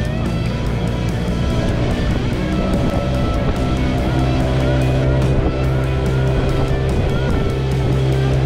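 Background music with a steady beat and sustained bass notes that change chord every few seconds.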